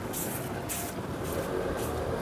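Coolant pouring and glugging from a plastic jug into a car's coolant filler neck, with a few short splashy bursts over a steady low rumble.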